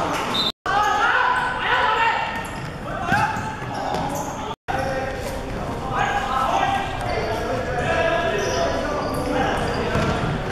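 Players' voices shouting and calling in an echoing sports hall during a futsal game, with thuds of the ball being kicked and bouncing on the wooden court. The sound drops out completely twice, briefly, about half a second in and about four and a half seconds in, at edits.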